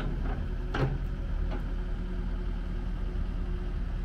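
A Caterpillar 308CR excavator's 55 hp Tier 4 diesel engine idling steadily, with a short sharp sound about a second in.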